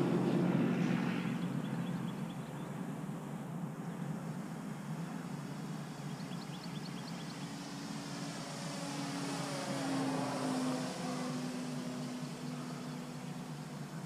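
Electric RC model biplane, a Nexa DH Tiger Moth with a 540 kV electric motor turning a 13x8 propeller, flying past in the air. Its steady motor-and-prop hum grows louder about ten seconds in and then fades as it passes.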